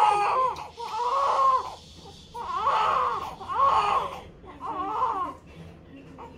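Newborn baby crying in four or five high-pitched wailing bursts with short pauses between them.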